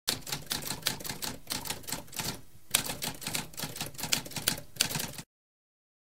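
Typewriter typing: a fast run of key clacks, with a short pause about halfway, that stops abruptly a little after five seconds.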